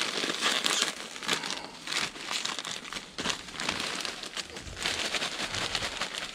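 Plastic bag of loose coconut fibre bedding crinkling unevenly as it is shaken out by hand, with the bedding pattering down onto the enclosure floor.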